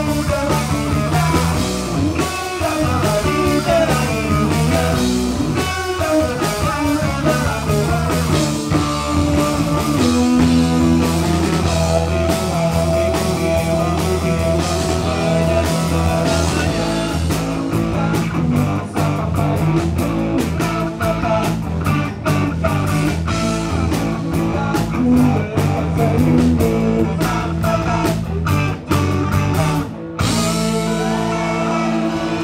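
Live rock band playing, led by electric guitars, with a fast, even beat that comes to the fore about halfway through.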